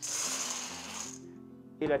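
Dried white beans poured into a stainless steel bowl: a dense rattling hiss of beans hitting metal for just over a second, fading out as the pour ends.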